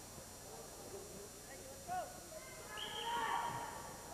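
Faint gymnasium room sound with distant shouted voices from around the mat: a brief call about two seconds in and a longer shout about three seconds in.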